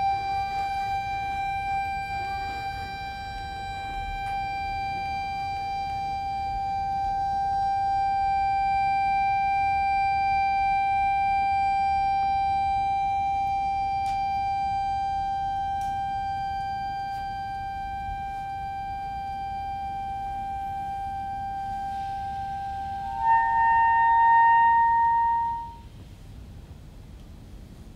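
A reed instrument holding one high, steady note for over twenty seconds, slowly swelling louder and easing back. Near the end a second, higher note enters over it, the first drops out, and the sound cuts off abruptly.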